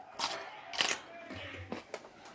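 Handling noise from a phone camera being moved: two short scuffs about half a second apart, the second louder, then a few fainter knocks.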